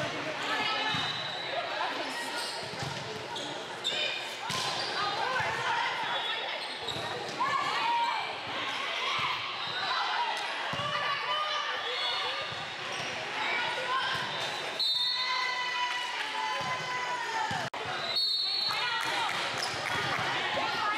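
Volleyball game noise: players and spectators calling out and shouting throughout, with sharp slaps of the volleyball being served and hit during the rally.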